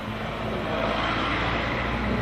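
A steady low rumble with a low hum, growing slightly louder.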